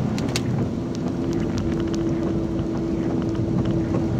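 Steady low rumbling noise with a steady hum running through it, the hum growing clearer about a second and a half in.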